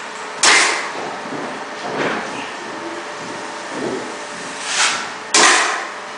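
A steel drywall knife scraping against a mud pan, cleaning off joint compound: two loud, sharp scrapes about five seconds apart, each fading within half a second, with softer scraping strokes between them.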